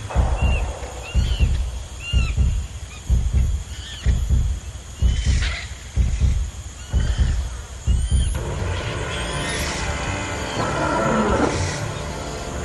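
Jungle-style soundtrack: a low drum beat about once a second with short chirping bird calls over it, two high sliding whistles past the middle, and a fuller wash of sound near the end.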